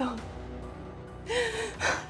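A woman crying: a short wavering sob about a second and a half in, then a sharp gasping breath near the end, over soft background music.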